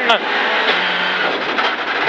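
Rally car engine running hard, heard from inside the cabin, with loose gravel hissing and clattering against the underside of the car as it drives along a gravel stage.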